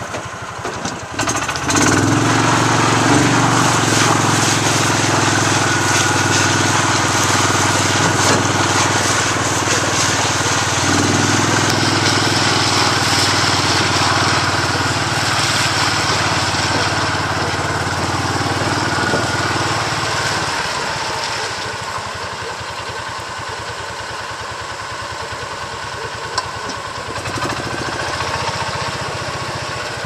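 Small engine of a Gator utility vehicle running as it drives through floodwater. It picks up about a second in, runs steadily, and drops much quieter about twenty seconds in, under a constant rushing hiss.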